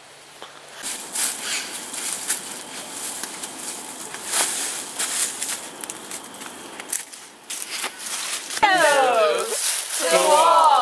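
Footsteps crunching and crackling through dry fallen leaves, irregular steps for several seconds. Voices start near the end.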